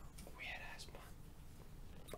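A pause in a conversation: faint room tone with a steady low hum, and a soft, barely audible voice about half a second in.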